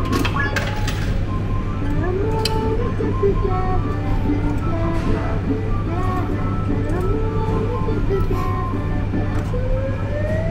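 Electronic arcade jingle music from claw machines playing steadily, with a few clicks and a low hum under it. A rising electronic tone starts near the end.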